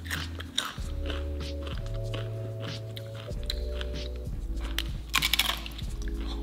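Crisp tortilla chip being bitten and chewed, a run of crunches that is loudest about five seconds in, over background music with a steady low bass.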